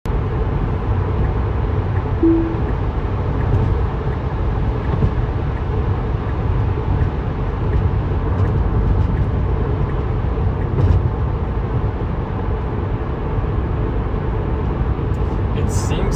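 Steady road and tyre rumble inside the cabin of an electric Tesla cruising on the freeway at about 70 mph. A short single chime sounds about two seconds in.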